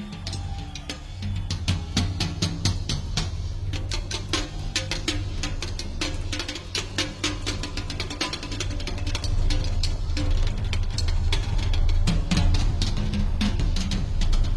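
Live rock band playing with the drum kit to the fore: a steady run of snare, bass drum and cymbal hits over a full bass.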